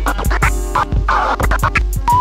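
Late-1980s hip hop track: turntable scratching on vinyl in short repeated bursts over a drum beat and a steady deep bass.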